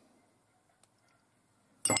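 Near silence: room tone, with one faint tick about a second in. A man's voice starts near the end.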